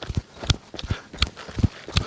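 Running footsteps on dry, stony dirt, a steady pattern of thudding strides about three a second.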